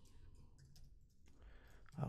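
Faint, irregular key clicks of a computer keyboard as a word is typed.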